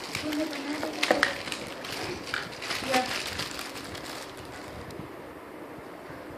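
Cardboard boxes and plastic packaging being handled, with a few soft clicks and rustles under low, indistinct voices; it settles to a quiet background in the last second.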